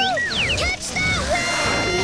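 Cartoon sound effect of a balloon losing air, a squealing whistle that swoops down and up in pitch as it zips about, over background music.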